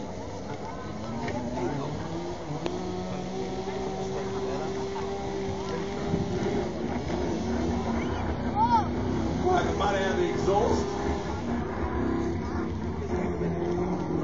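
Off-road 4x4's engine labouring under load, holding steady revs for a few seconds, then rising and falling as it works through a mud and water hole. The commentator reckons it is misfiring, running on only about six cylinders, after going through the water. Spectators' voices can be heard over it.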